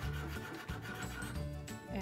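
Black Sharpie marker scribbling back and forth on paper as a small circle is coloured in, over steady background music.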